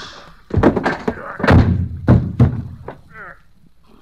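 Radio-drama sound effects of a blow and a heavy fall: a run of loud, sudden thuds as a man is struck and drops to the floor, hitting his head. A short vocal sound follows about three seconds in.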